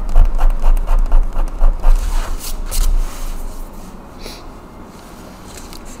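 A sharp blade scraping dried paint off paper in quick, even strokes, about five a second, then a few lighter separate scrapes in the second half. This is paint being removed to soften an edge.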